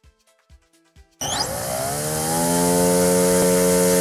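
Electric motor and propeller of a foam RC pusher wing run up on the ground. The whine cuts in abruptly about a second in, rises in pitch for about a second, then holds at a steady, loud pitch. The run is a static check of the motor's current draw.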